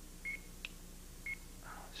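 Game-show countdown clock beeping once a second: two short high beeps, with a faint click between them, marking the seconds running down on the bonus-round timer.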